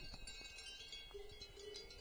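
Cowbells on grazing cows ringing faintly and irregularly. One clearer bell tone is held for under a second just past the middle.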